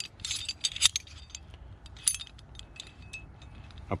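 Small metallic clicks and clinks of the Hitch Hiker XF's Slic Pin being worked by hand, its spring plunger pushed in and the pin turned in the device's body. The clicks come irregularly, the sharpest about a second in.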